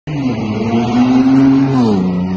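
A motor vehicle's engine running loudly, its pitch rising slowly and then dropping near the end, over a steady hiss.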